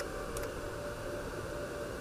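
Steady background hiss with a faint hum, and one or two soft computer-keyboard keystrokes near the start as a digit is typed.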